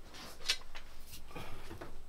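A few light clicks and rustles of tools being handled as a hand drill is picked up, with one sharp click about half a second in.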